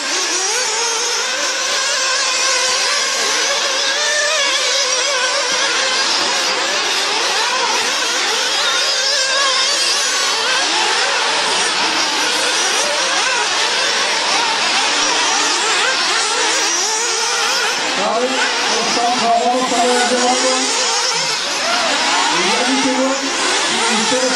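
The small engines of several 1/8-scale off-road RC buggies running together on a dirt track, each whining and revving up and down, so the pitches overlap and waver continuously.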